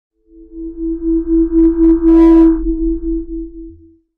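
Electronic logo sting: a steady synthesized tone over a low hum, wavering in level. It swells to its loudest about two seconds in, then fades out just before four seconds.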